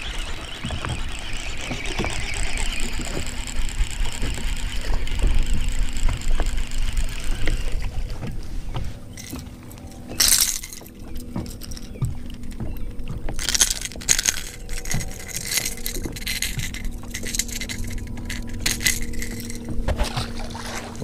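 Outdoor noise aboard a bass boat on open water: a steady low rumble of wind on the microphone with a faint steady hum. Short sharp handling noises come about ten seconds in and again a few seconds later, with light clinks of tackle.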